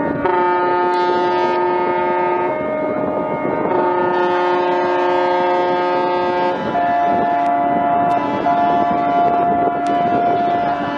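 Ships' horns sounding three long blasts, each held two to four seconds, several pitches at once, the last one on a different, lower note.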